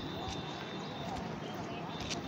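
Floodwater of the swollen Penna river rushing steadily, with indistinct chatter of onlookers over it.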